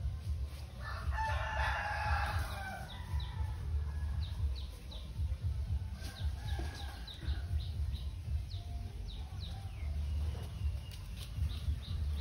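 A rooster crows once, about a second in, followed by a run of short, high, quickly falling bird chirps, over a low rumble.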